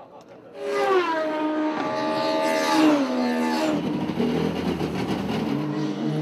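BMW touring race car on track, its engine note climbing and dropping in pitch as it works through the gears. It comes in suddenly about half a second in and stays loud.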